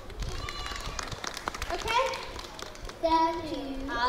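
Quick footsteps of a child running across a stage, followed by a child's voice calling out in drawn-out, wordless sounds about two seconds in and again near the end.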